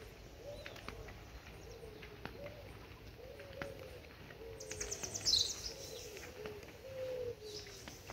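Birds calling: many short, low, arched notes repeating throughout, with a higher, falling call about five seconds in that stands out as the loudest sound. Faint footsteps on a paved path run underneath.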